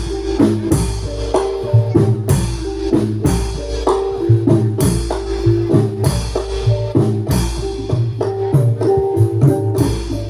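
Live Javanese gamelan music accompanying a dance: frequent sharp drum strokes several times a second over sustained metallophone notes and recurring deep low notes, at a steady, lively pulse.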